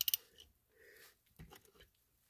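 Ratchet with a 17 mm socket clicking a few times near the start as it tightens an ATV oil drain plug, then a couple of faint clicks about a second and a half in.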